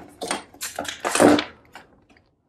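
Handling noise: a few short rustling and clattering sounds of things being moved about, loudest about a second in.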